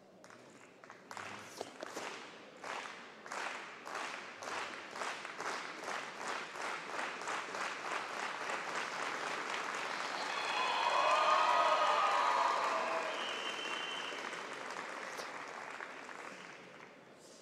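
Spectators clapping in unison, about two claps a second, that merges into continuous applause. Shouted cheering rises over it about two-thirds of the way through, at the loudest point, then the applause fades.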